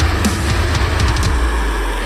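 Deathcore music: heavy, low distorted guitar chugs and pounding drums of a breakdown. Near the end the bottom drops out briefly, before the next hit brings it back.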